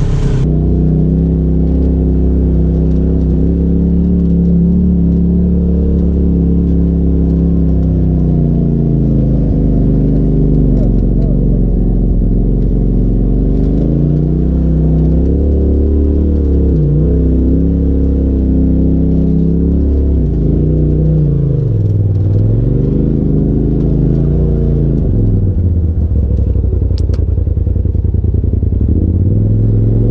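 Side-by-side UTV engine at low crawling speed on a rocky trail, heard from the cab, its pitch rising and falling with the throttle and dipping sharply a few times in the second half.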